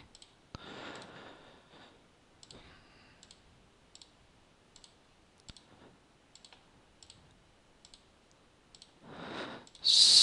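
Computer mouse buttons clicking: about a dozen single sharp clicks at irregular intervals, with a soft breathy hiss near the start.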